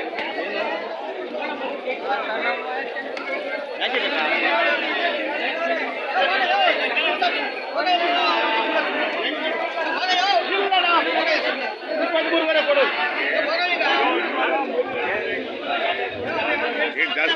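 Crowd chatter: many men talking at once, their overlapping voices making a steady babble with no single voice standing out.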